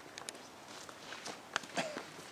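A dog's paws and claws tapping on wooden planks as it walks the raised board walkway, with a sharp knock about one and a half seconds in and a brief voice-like sound just after.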